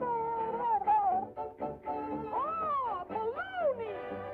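Early sound-cartoon soundtrack: band music with a high, voice-like sound that slides up and down in pitch in long swoops, as a cartoon character's talk or singing.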